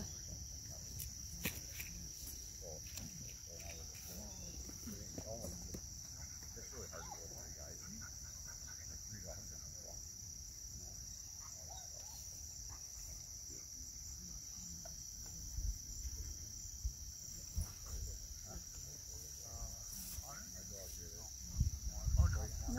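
Steady high-pitched chirring of field crickets, unbroken throughout, with faint distant voices and wind rumble on the microphone.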